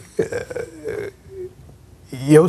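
A man's quiet, drawn-out hesitation sound in the voice, a wavering vowel-like murmur that trails off in the second half.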